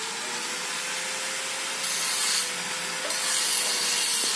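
Handheld angle grinder running with a steady whine, its disc grinding steel with a harsh hiss that grows louder twice, about two seconds in and again from about three seconds in.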